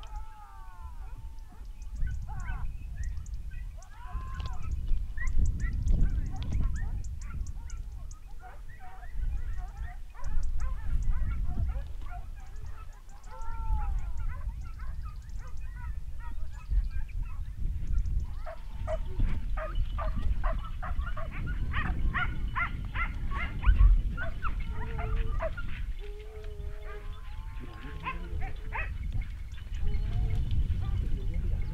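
A pack of hunting dogs barking and yelping as they work the scrub to drive game, with a quick run of yelps in the second half. A steady low rumble of wind on the microphone runs underneath.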